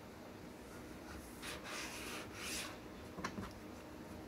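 Hands rubbing and shaping soft bread dough on a floured mat: two soft rubbing swishes, then a small sharp click a little after three seconds in.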